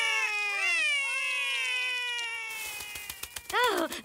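Two young cartoon voices wailing, a long held cry slowly falling in pitch with a second cry rising and falling over it, fading out a little after three seconds in.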